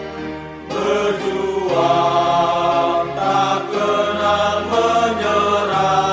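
A slow Indonesian army hymn sung by a choir in long held notes that move to a new chord about every second. It gets louder and fuller from under a second in.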